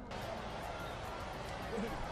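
Steady open-air background noise from the live feed of a cricket ground. It comes in suddenly and has faint distant voices in it.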